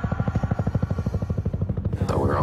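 Military helicopter rotor beating close by: a rapid, even chop over a low rumble.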